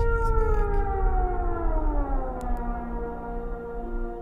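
Film sound effect of a sauropod dinosaur calling: one long, deep call that falls slowly in pitch, then levels off, over a low rumble.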